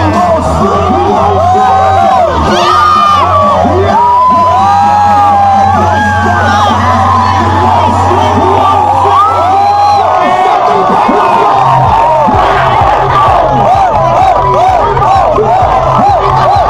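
Loud dance music with heavy bass over a packed crowd shouting and cheering. About ten seconds in the steady bass drops away, and a pulsing beat starts a couple of seconds later.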